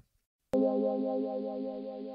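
A short synthesizer chord sting: one sustained chord that starts suddenly about half a second in and slowly fades, used as a section-break jingle between topics.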